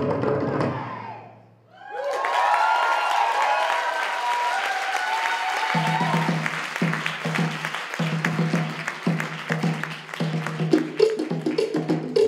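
Tahitian ote'a drum music with a clattering wooden slit-drum rhythm. It drops away about a second and a half in, then comes back with held tones over a noisy wash, and a steady pulsing low drum beat joins about halfway through.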